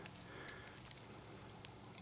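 Faint rustling of dry leaf litter underfoot, with a few soft, scattered crackles.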